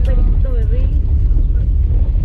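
Steady low rumble of a taxi's engine and road noise heard from inside the cabin, with a short faint voice about half a second in.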